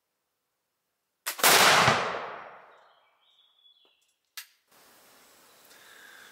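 A French M1786 light cavalry flintlock carbine fired once, loaded with a 15.9 mm lead round ball: a short snap, then a split second later the loud shot about a second and a half in, its echo dying away over about a second.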